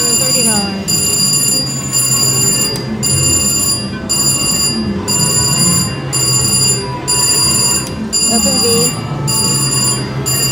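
VGT Lucky Ducky mechanical-reel slot machine playing its electronic ringing spin sound while the reels turn, a repeating pattern of high bell-like tones broken about once a second.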